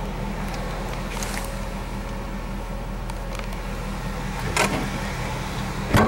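Steady low hum of an idling vehicle engine, with a couple of knocks near the end.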